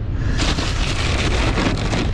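Crackling rustle of plastic bags and rattling of metal parts as a hand rummages through a toolbox, starting about half a second in, over a steady low rumble.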